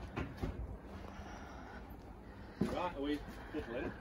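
Quiet background with a few soft knocks at the start, then faint voices of people talking in the second half.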